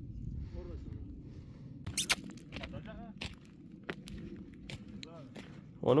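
Footsteps crunching on a gravel road, irregular steps starting about two seconds in, with faint voices in the distance over a low steady rumble.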